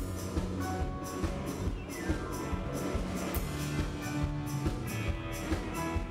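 Live band playing an instrumental passage, with no singing: a drum kit keeps a steady beat, its cymbal strokes about four a second, under sustained pitched instrument notes.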